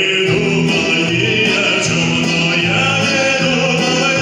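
Live amplified song: a male singer at a microphone with a choir and instrumental backing, sung in long held notes without a break.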